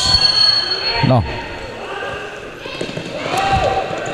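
Handball play on an indoor court: the ball bouncing with thuds, and shoes squeaking on the floor with a few high steady tones near the start and again late on.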